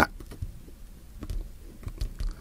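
A few faint, scattered clicks and taps of an unboxing knife blade against a cardboard headphone box as it goes at the box's seal sticker.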